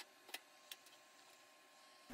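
Near silence, with three faint clicks about a third of a second apart in the first second and a faint steady tone under them.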